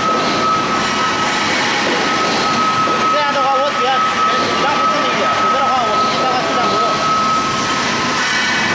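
Horizontal metal-cutting band saw cutting through a metal tube: a steady high whine over a noisy machine-shop din. The whine stops near the end.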